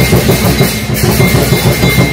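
Lion dance percussion: a large drum beaten in a fast, driving rhythm with cymbals clashing on the beats, loud and continuous.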